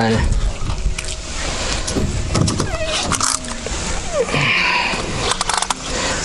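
Handling noise as a pike is unhooked with pliers: scattered clicks and scraping, with a few short vocal sounds.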